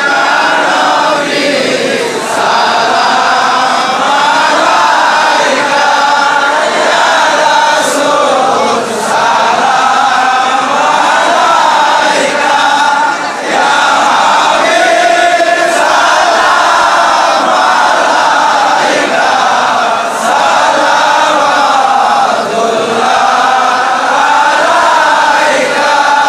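A large crowd of men chanting together, loud and unbroken, many voices overlapping in a devotional chant.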